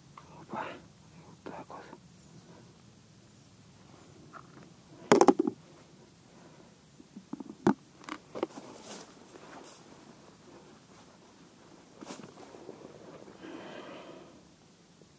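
Hands packing groundbait onto a flat method feeder and handling the tackle: soft rustling with scattered clicks and knocks, the two sharpest about five and seven and a half seconds in.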